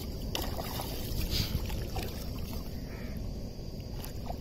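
Water sloshing and lapping as a nylon cast net is drawn in through shallow water, with a couple of small splashes.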